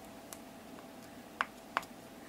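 Two light clicks of small hard parts knocking together about a third of a second apart, as a red 3D-printed prosthetic fingertip is handled while its nylon cable is pulled in.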